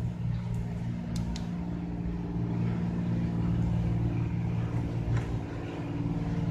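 A machine running steadily with a low, even drone, joined by a few faint clicks about a second in.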